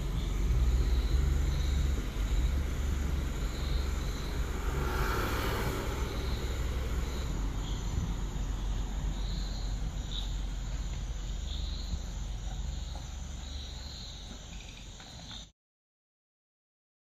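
Land Rover Defender 110 idling with a steady low hum, while insects chirp in a repeating pattern about once a second. A brief rushing swell rises and fades around five seconds in, and the sound cuts off suddenly near the end.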